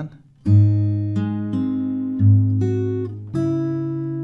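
Steel-string acoustic guitar with a capo played fingerstyle. A bass string and a treble string are plucked together about half a second in and again after about two seconds, with single notes between them, about six plucks in all, each left ringing.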